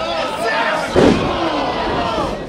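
A wrestler is slammed back-first onto the ring canvas in an Alabama slam: one heavy thud about a second in. Crowd voices shout around it.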